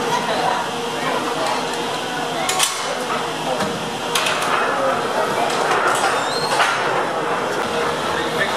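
Metal clanks and clicks from a gondola lift station's machinery as cabins move along the station rail, four sharp knocks spread over several seconds, over a steady background of crowd chatter.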